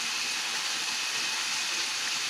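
A steady, even hiss with no other distinct sound.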